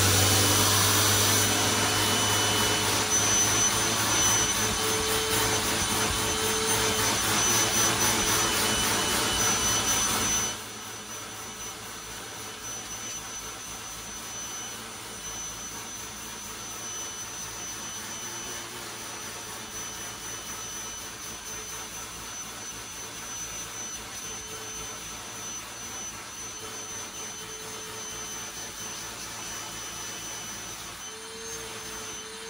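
Vacuum cleaner running through a Flowbee vacuum haircutting clipper, whose blades are driven by the vacuum's airflow, as it is drawn through the hair: a steady rushing with a high whine. About ten seconds in the rush drops sharply to a quieter level while the whine carries on.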